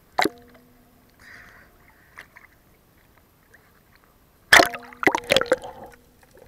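Sea water sloshing and splashing against a waterproof action camera at the surface, with a sharp splash about a quarter second in and a burst of louder splashes near the end as the camera goes under.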